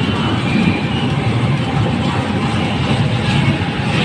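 LRT-1 third-generation Kinki Sharyo light rail train pulling into a station, a steady rumble of its wheels on the rails.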